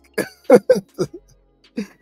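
A person's voice making a few short vocal sounds, separate brief bursts with silent gaps between them.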